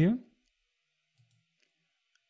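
A word of speech trails off, then near silence broken by a few faint computer mouse clicks, a little over a second in.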